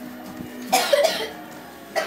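A single short, loud cough about three-quarters of a second in.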